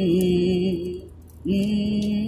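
Solo male voice singing a cappella in wordless held notes. One long note fades out about a second in, and another starts about half a second later.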